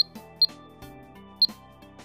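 Short high-pitched key-press beeps from a Videofied alarm keypad as letters are typed in: three beeps, at the start, about half a second in and about a second and a half in. Soft background music plays under them.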